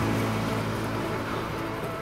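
Diesel railcar train (KRD) passing, a steady engine hum that slowly fades as the last car moves away.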